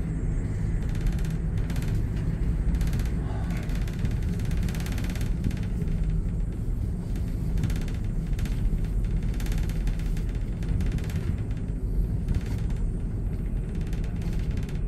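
Steady low rumble inside a moving cable car gondola cabin as it rides along its cable.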